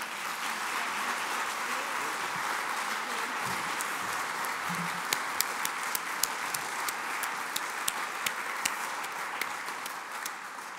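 Audience applauding steadily, with a few sharper single claps standing out through the middle.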